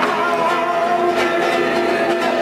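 Acoustic guitar playing, accompanied by a cajón struck by hand.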